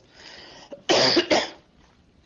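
A man coughing twice in quick succession, after a faint breath.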